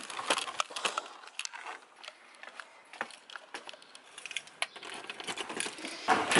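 Scattered light clicks and taps, irregular and fairly quiet, from walking on stone paving with a handheld camera.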